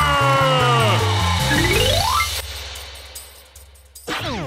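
A children's TV theme song ending: a long held note slides down over a bass line, then a quick rising glide about two seconds in, and the music fades away.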